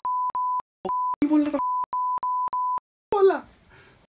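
Censor bleep: a steady, pure beep tone edited over speech in about seven short pieces in quick succession, with a brief snatch of voice showing between them. A short burst of voice follows near the end.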